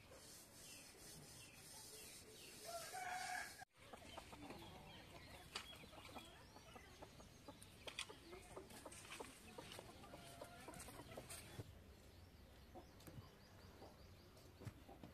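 A chicken clucking in a short call about three seconds in, faint, followed by scattered light clicks and rustles.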